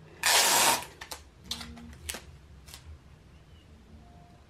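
Sheets of printer paper being slid and pressed flat on a cutting mat: a loud rustle for about half a second near the start, then a few light crinkles and taps.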